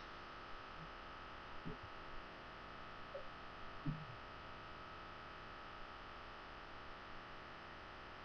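Quiet, steady hiss with a thin, even whine, the background noise of a small room picked up by a webcam microphone, broken by two faint soft knocks, about two seconds in and again about four seconds in.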